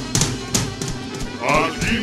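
Live cumbia band playing, with percussion hits about three times a second over the band. Near the end a voice calls out with a wavering pitch.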